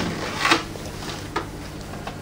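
Handling noise from a thin, painted polycarbonate RC car body being picked up and turned over: a few light plastic crackles and taps, the strongest about half a second in.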